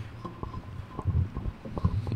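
Irregular low thumps and rumble of handling noise picked up by close desk microphones, with a few short knocks, in a pause with no talk.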